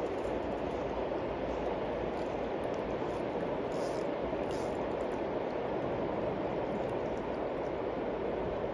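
Steady, even rush of flowing river water.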